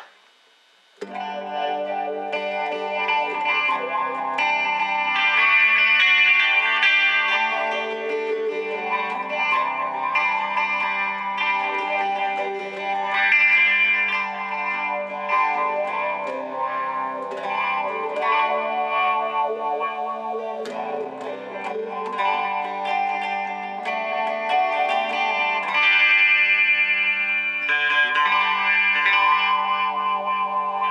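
Electric guitar played through a Boss ME-80 multi-effects floorboard with chorus added, ringing sustained chords. It starts about a second in.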